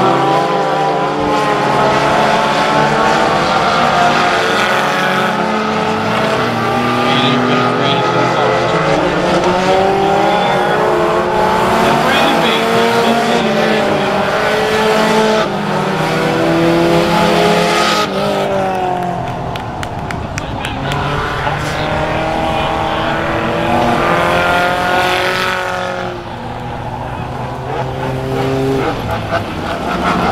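Several four-cylinder tuner race cars running on a dirt oval. Their engines rev up and down through the corners and down the straights, with several overlapping pitches rising and falling.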